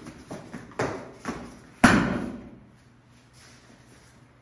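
Quick scuffs and light thumps of bodies grappling and striking on a padded martial-arts mat, ending in one loud thud about two seconds in as a man is hip-thrown down onto the mat.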